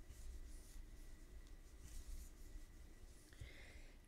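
Faint scratchy rustling of bulky yarn being worked with a crochet hook, stitch after stitch, over a low room hum.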